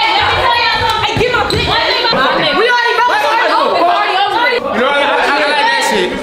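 Several people shouting and talking over each other in an echoing room, with low thumps during the first two seconds.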